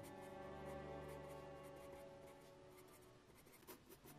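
Staedtler 4B graphite pencil scratching across sketch paper in quick repeated short strokes while shading. Soft background music plays under it and fades away toward the end.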